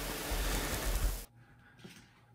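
Steady background hiss with a low hum that cuts off suddenly a little over a second in, leaving near silence with a faint tick or two.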